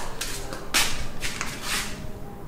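Scuffing and rustling of someone walking with a handheld camera: three short bursts of noise, a little over half a second apart.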